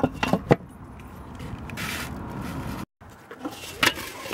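Metal clinks and scraping from the steel lid of a small Weber kettle grill being handled: three quick clinks at the start, a stretch of hiss, and another sharp clank near the end.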